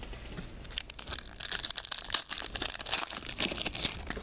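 A football trading-card pack's foil wrapper being torn open and crinkled: a dense, irregular crackling that starts about a second in.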